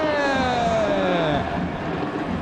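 A sports commentator's long, drawn-out goal shout, held on one vowel, its pitch sliding steadily down until it trails off about a second and a half in.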